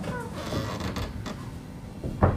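Creaking, opening with a short falling squeal and followed by a few sharp clicks about half a second and a second in.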